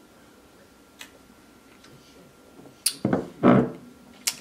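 A man drinking beer from a glass: quiet while he sips, then a sharp smack about three seconds in and two short, loud sounds as he finishes the sip.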